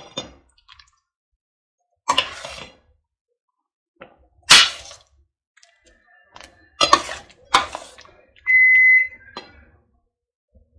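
A metal spoon stirring beans in a stainless steel pot, scraping and knocking against the pot in a few separate strokes. Near the end, a single steady, high electronic beep lasts about half a second.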